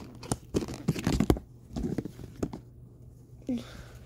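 Short clicks, taps and rustles of plastic slime containers being handled, busiest in the first two and a half seconds, then a quiet stretch; a brief vocal sound comes near the end.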